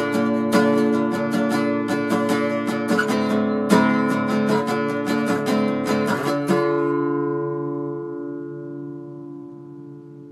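Acoustic guitar strummed in a steady pattern, ending with a last chord at about six and a half seconds that is left to ring out and slowly fade.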